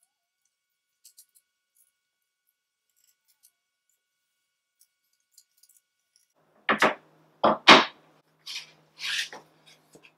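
Parts of a flat-pack particleboard bookcase being handled: a few faint ticks, then, about two-thirds of the way in, a quick series of five or six short, loud scrapes and knocks as the thin fibreboard back panel is moved against the frame.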